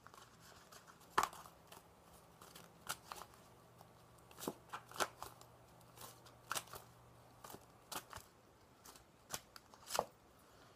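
A tarot deck being shuffled by hand: faint, irregular snaps and flicks of card edges, a dozen or so, over a faint steady low hum.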